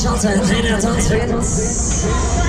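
Loud fairground ride music with a steady beat, with the operator calling "go" over the public address at the start. A high hiss comes in for the last half second.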